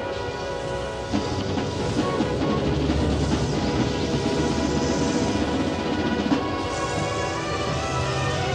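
Drum and bugle corps music: held brass chords, growing louder and fuller with drums about a second in.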